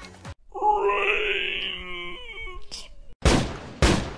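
A long, drawn-out wailing moan from a voice, starting about half a second in and fading out before the three-second mark, followed by two loud thumps about half a second apart.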